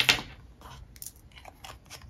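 Cross Aventura fountain pen barrel being screwed onto its grip section: a run of small dry ticks and scrapes from the threads, several a second.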